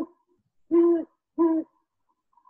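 Male great horned owl hooting: a hoot ends at the very start, then two deep, evenly pitched hoots follow, about a second and a second and a half in.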